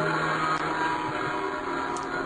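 Recorded gong sound effect ringing, a dense cluster of steady overtones held at an even level. It plays a bit cut off, which the host blames on his computer being overloaded by video encoding.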